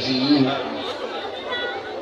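A man's voice over a microphone repeating a short phrase over and over, with people chattering behind it; the voice is loudest at the start.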